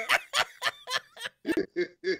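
A man laughing in a quick run of short bursts, about four a second, with a spoken word near the end.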